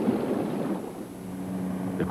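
Outdoor background noise with some wind rush. A low steady hum comes in about halfway through.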